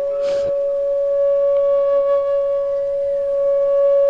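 A single musical note from an accompanying instrument, held steady for several seconds. It is one sustained pitch with overtones and no rhythm, and a fainter higher tone joins about half a second in.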